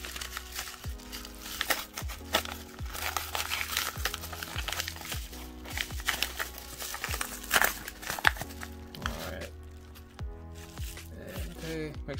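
Padded kraft bubble mailer crinkling and tearing as it is ripped open by hand, in many quick crackles, over steady background music.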